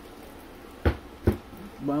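Two short knocks about half a second apart as a CB radio in a plastic bag is handled and set down on a board.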